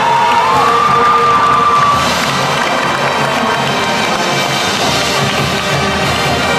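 Marching band brass and percussion playing while the crowd cheers over it. Near the start a single high note slides up and holds for about two seconds.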